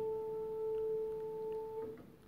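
Upright piano string ringing on one sustained pure note with a faint octave overtone, kept sounding by sympathetic resonance with a note that shares its harmonics. It cuts off suddenly near the end.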